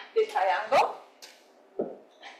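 A person's voice, briefly, followed by a single knock near the end.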